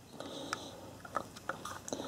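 Faint handling of a plastic HO-scale model railcar in the fingers: a light rubbing, then a few small scattered clicks.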